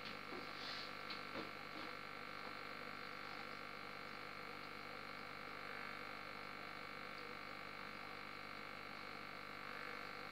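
Steady low hum of an aquarium's running filter equipment. A few faint clicks come in the first couple of seconds.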